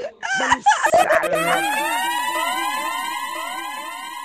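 A voice for about the first second, then an electronic siren-like sound effect: a rising sweep repeating about four to five times a second, fading slowly.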